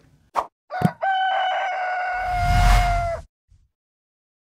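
Rooster crow sound effect in an animated logo sting: a couple of short blips, then one long, nearly level crow starting about a second in, with a low rush of noise joining under its second half before everything cuts off sharply a little after three seconds.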